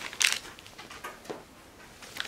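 A short rustle of a plastic mailer bag being handled near the start, then a faint tap a little over a second later.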